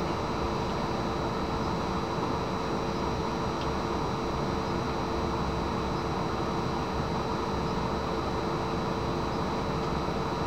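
Steady room hum from ventilation or fan noise: a constant even hiss with a low steady tone running under it, unchanging throughout.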